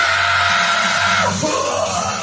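A man's held rock scream into a microphone over a guitar-driven rock backing track. It breaks off with a falling pitch a little over a second in, and a shorter sung phrase follows.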